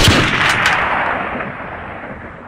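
Gunshot-style blast sound effect: a sudden burst with a couple of sharp cracks about half a second in, its noisy tail fading steadily.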